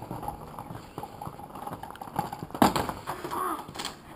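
Inline skate wheels rolling over a paving-stone surface, rattling with rapid small clicks at the joints. About two and a half seconds in comes one loud thump as the skater falls onto the pavers.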